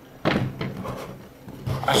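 Cardboard box lid rubbing and sliding as it is worked loose and pulled off the box. It starts suddenly and fades out over about a second.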